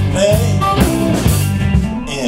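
A live blues-rock band playing, with electric guitar, electric bass and a drum kit keeping a steady beat.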